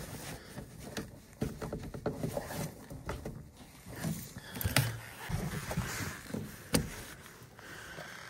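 Irregular light knocks, clicks and rustling from hands working the black rubber condensate hoses and wiring inside a gas furnace cabinet, with two sharper clicks in the second half.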